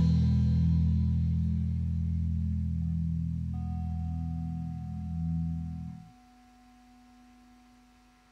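The closing chord of a garage metal band's track, played on guitar and bass, ringing out after the last drum hit and slowly fading. It cuts off suddenly about six seconds in, leaving only a faint lingering tone.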